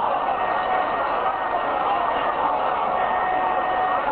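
A man's voice preaching into microphones through a loudspeaker system, blurred into a dense steady wash of crowd noise.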